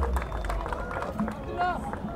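Crowd of onlookers chattering, with scattered voices and a few short clicks.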